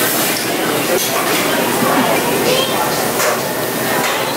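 Restaurant dining-room noise: a loud, steady hiss with faint voices and a few light clinks of dishes.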